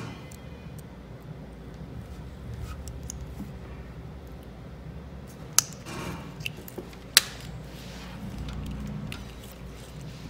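Hands and a small metal pick tool working a plastic multi-pin wire-harness connector as its orange wedge lock is pried out: light handling rustle and small ticks, with two sharp plastic clicks about five and a half and seven seconds in, over a low steady hum.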